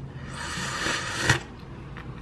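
A person slurping soup from a spoon: one noisy sip about a second long that ends sharply.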